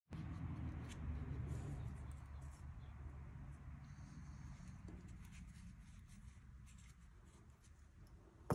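Faint clicks and scratching of small metal Zippo lighter parts being handled, over a steady low rumble that slowly fades.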